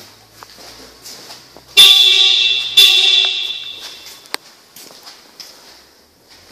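A loud horn-like tone sounds twice, about a second apart, and fades out over the following second or so. A single sharp click follows.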